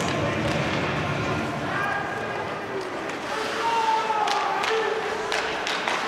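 Ice hockey rink during play: sticks and puck clacking a few times in the second half over a steady wash of skates on ice and distant voices of players and spectators.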